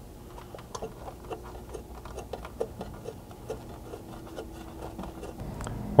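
Faint, irregular small metallic clicks and ticks, about three or four a second, as steel button-head bolts are started through a steel rock slider's top flange into its mounting nuts.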